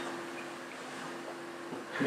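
A quiet pause in a small hall: room tone with a faint, steady low hum.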